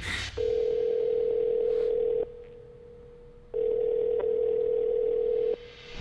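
Telephone ringback tone of an outgoing call ringing through a phone's speaker: a steady tone in two rings of about two seconds each, with a short gap between them.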